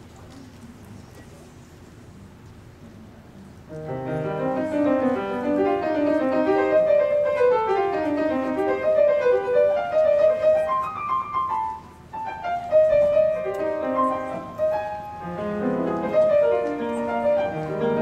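Solo grand piano: after about four seconds of quiet room noise the playing begins, running note passages with a brief break near the middle before it carries on.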